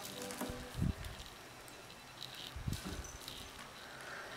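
Quiet room tone with two soft, low thumps, one about a second in and one a little before the end.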